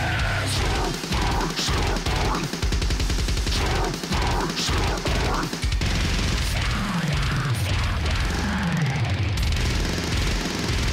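Deathcore music playing: very fast, heavy drumming under distorted guitars and harsh vocals, with two downward pitch slides in the low range near the end.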